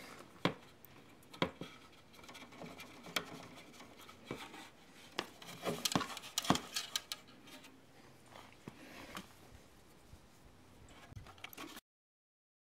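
Faint scattered clicks and plastic handling sounds: wire spade connectors being pushed onto a replacement limit switch on an Atwood RV furnace, and the furnace's plastic cover being moved in the hands. A few sharper clicks stand out, around the middle.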